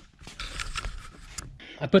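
Faint rustling with a few light clicks, the handling and movement noise of someone moving about with the camera. A man's voice starts near the end.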